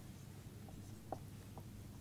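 Faint marker strokes on a whiteboard as an oval is drawn, with a few brief squeaks; the loudest comes just after a second in.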